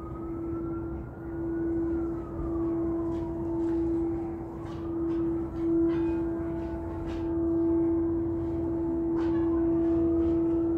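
Crystal singing bowls ringing: one steady low tone held throughout, swelling and fading in loudness, with fainter higher tones sliding up and down above it. More steady higher tones join about six seconds in.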